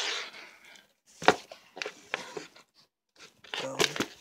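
Tissue paper and a cardboard shoebox rustling and crinkling as a shoe is handled in its box, with a few short knocks around two seconds in.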